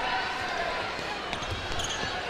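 A basketball being dribbled on a hardwood court, heard as a few low thuds, under indistinct voices in the arena.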